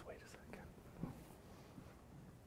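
Faint whispering and murmured voices.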